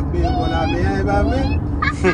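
Several people in a moving car talking excitedly in high, overlapping voices over the low hum of road noise.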